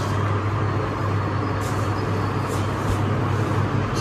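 Steady low background hum, with a few faint short rustles of silk sarees being handled.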